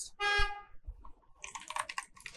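A short, steady pitched tone like a toot near the start, then a quick run of computer keyboard key clicks in the second half as a word is typed.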